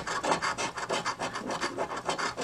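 A coin scratching the coating off the winning-numbers area of a paper scratch-off lottery ticket, in quick repeated strokes.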